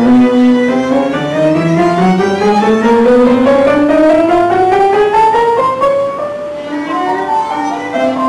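Violin playing a long, smoothly rising line that climbs steadily for about six seconds, then breaks into shorter held notes near the end.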